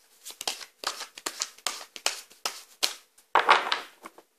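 Deck of tarot cards being shuffled by hand: quick papery strokes about three a second, with a longer, louder rush of cards near the end.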